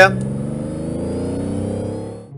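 Car engine accelerating away, its pitch rising slowly and evenly, fading out just after the end.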